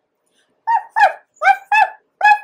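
A woman voicing a dog puppet with imitated dog yips: four short pitched calls, starting a little over half a second in, each falling away at its end.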